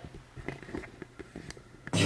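Faint, scattered small clicks and taps from the camera being handled, over a quiet room.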